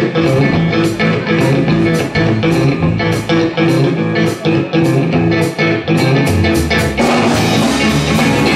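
Live blues band playing the instrumental opening of a song: electric guitar, bass guitar and drum kit, with keyboard, over a steady drum beat.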